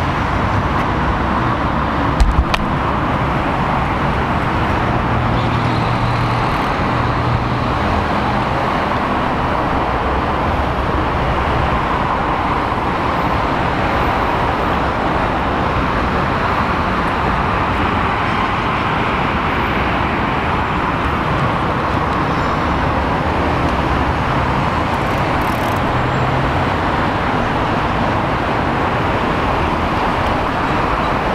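Steady, loud traffic noise from a busy multi-lane highway close by, a constant wash of tyres and engines with a low engine hum underneath. A few sharp clicks come about two seconds in.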